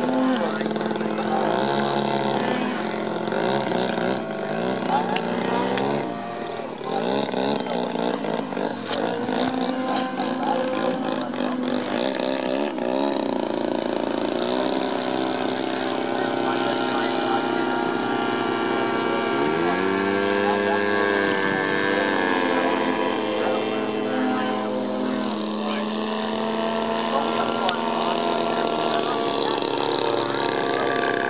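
Radio-controlled aerobatic model airplane's motor and propeller running, the pitch rising and falling again and again as the throttle is worked through 3D manoeuvres.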